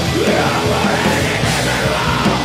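A hardcore rock band playing live and loud: a screamed vocal line over twin distorted electric guitars, bass and drums, the scream coming in about a quarter second in.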